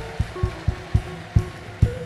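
Church band music with a steady drum beat, about four beats a second, under a few held low notes.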